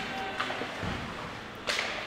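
Ice hockey rink ambience at low level: skates on the ice and a faint crowd, with a brief scrape or stick sound near the end.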